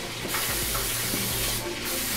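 Aerosol cooking spray hissing onto the plates of an open waffle iron to grease it, in two long sprays with a short break between them just before the end.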